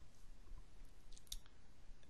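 A couple of faint, quick computer mouse-button clicks a little over a second in, over low background hiss.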